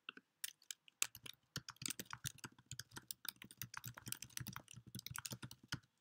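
Computer keyboard being typed on: one click at the start, then a quick, uneven run of key clicks for about five seconds as a short message is typed.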